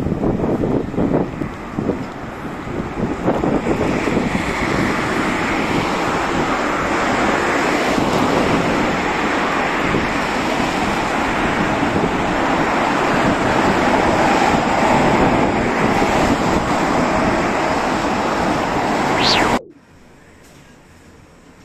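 Wind blowing on the microphone over the noise of road traffic, a loud steady hiss with a few gusty buffets in the first seconds. A short rising sweep comes just before it cuts off suddenly near the end.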